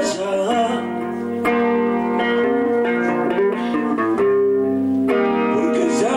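Guitar music, with plucked notes that are held and some that slide in pitch.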